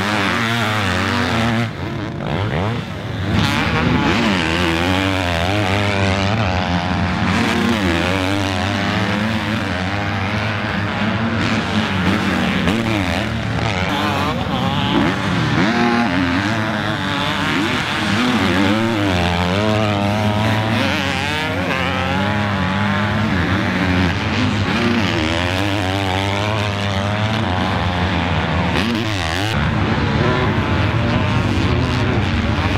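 Several 250 cc motocross bikes running on a dirt track, their engines overlapping and revving up and down continuously as the riders accelerate and shift.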